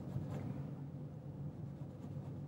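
Faint scratching of a paintbrush working oil paint on a canvas, over a steady low room hum.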